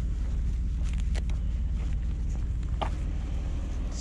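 Steady low rumble of a vehicle travelling along a street, with a few faint ticks or rattles over it.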